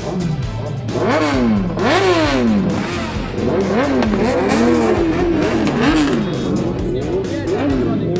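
Sport-bike engines revving in repeated blips, pitch climbing sharply and falling back, several overlapping, over background music.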